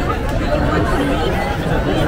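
Crowd chatter: many people talking at once around the food stalls, a steady babble of overlapping voices with no single voice standing out.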